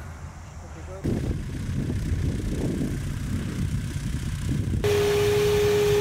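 A low, uneven rumble starts about a second in. Near the end it cuts to steady glider-cockpit airflow hiss with a single held tone running under it.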